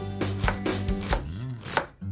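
Chef's knife rapidly chopping onion on a wooden cutting board, about four quick strikes a second, pausing briefly near the end.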